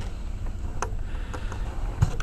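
Steady low hum and hiss of background noise, with one faint click a little under a second in.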